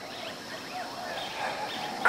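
Quiet outdoor ambience with a few faint, short bird chirps scattered through it.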